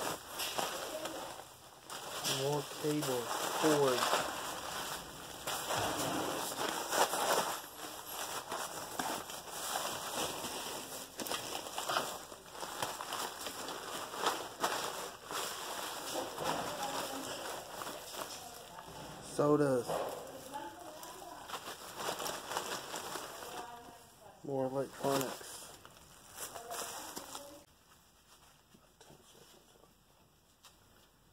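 Nylon and plastic bags rustling and crinkling as their contents are rummaged through by gloved hands, with scattered clicks and knocks of items being moved. The handling dies down near the end.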